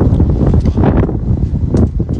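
Wind buffeting a phone's microphone: a loud, uneven low rumble in gusts, with brief rustling about a second in and near the end.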